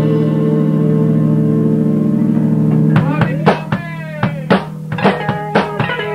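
Rock band jamming, recorded on cassette: an electric guitar chord rings out for about three seconds, then sharp hits come about twice a second under the guitar notes.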